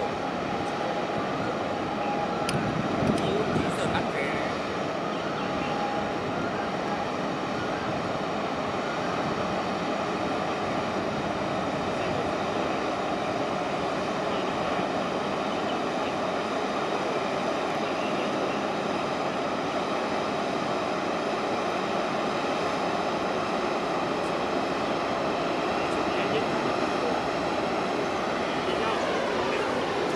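Steady, loud rumble and hum of a large container ship's engine and ventilation machinery as the ship passes close by, with a sweeping shift in tone near the end.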